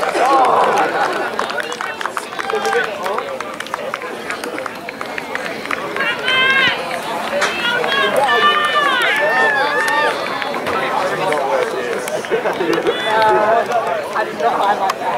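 Shouted calls and voices from rugby players and spectators across an open field. The loudest, highest-pitched shouting comes from about six to ten seconds in.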